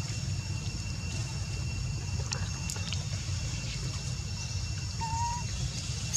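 Outdoor background noise: a steady low rumble with faint, continuous high-pitched tones and a few soft clicks. A brief whistle-like call comes about five seconds in.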